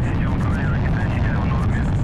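Soyuz-FG rocket's engines at liftoff: a loud, steady low rumble.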